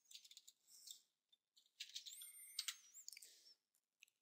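Near silence with faint, scattered computer keyboard and mouse clicks in two short clusters.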